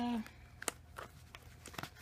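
Light handling of a plastic paint marker and paper sample packets and brochures: a few faint, sharp clicks and taps, one about two-thirds of a second in and a small cluster near the end.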